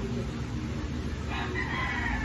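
A rooster crowing, starting abruptly a little past halfway and falling slightly in pitch, over a steady low hum.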